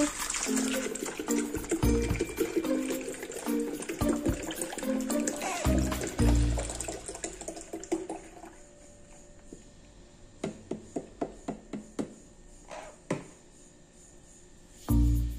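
Milk pouring from a carton into a plastic blender jar, a steady splashing pour for about the first eight seconds, heard over background music with a beat. It then goes quiet, with a few light clicks near the end.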